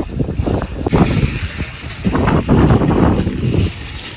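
Strong wind buffeting the phone's microphone in loud, uneven gusts, easing a little near the end.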